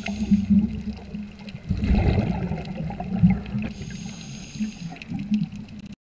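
Underwater water noise heard through a submerged microphone: a muffled, churning low rumble that swells about two seconds in and again around three seconds, with a faint high hiss at the start and again around four seconds in.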